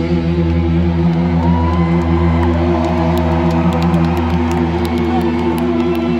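A live rock band's amplified guitars and bass hold a sustained chord through the concert sound system, one note wavering slightly. A couple of short pitch slides sound over it in the first half.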